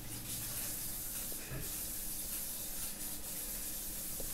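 Pencil scratching on paper as short lines are drawn over again to thicken them.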